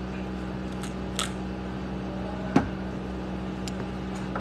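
Steady low hum of room noise, with a faint click a little past one second and a single sharp click about two and a half seconds in.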